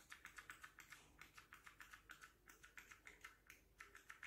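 Faint, rapid spritzes from a pump spray bottle of toner being pressed over and over onto a cotton pad, about five or six short hisses a second.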